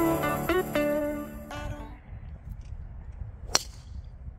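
Background music fading out over the first two seconds, leaving a low wind rumble. About three and a half seconds in comes a single sharp crack: a TaylorMade SIM driver striking a golf ball off the tee.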